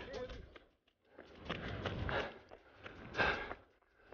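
A runner's footsteps and rustling on a wet grassy trail, heard in two short stretches with light clicks, broken by two brief gaps of dead silence where the audio cuts.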